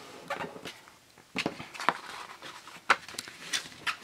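A sheet of cardstock being handled and folded by hand: paper rustling and sliding, with a few short, sharp crinkles and taps, the loudest about three seconds in.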